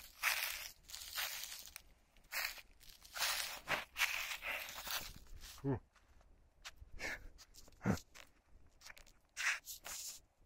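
Footsteps crunching and rustling through dry leaf litter on a forest floor for about five seconds. After that come scattered rustles and two short low vocal sounds from a man, the second about two seconds after the first.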